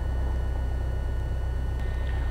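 Piper Cherokee's piston engine idling on the ground, heard from inside the cockpit as a steady low drone.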